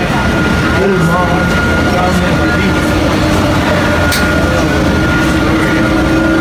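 Inside a moving shuttle bus: steady engine and road noise, with a steady high whine and a lower hum that joins about two seconds in.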